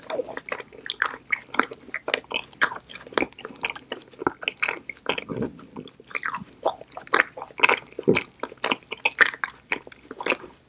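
Close-miked chewing of an edible soap-bar replica: a dense, irregular run of mouth clicks and smacks, several a second.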